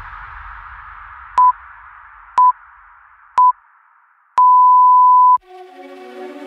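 Workout interval timer beeping down the end of a work interval: three short beeps a second apart, then one long beep about a second long that marks the switch to rest. Background music fades out under the beeps, and new music starts right after the long beep.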